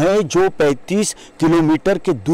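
Speech only: a man talking steadily into a handheld microphone.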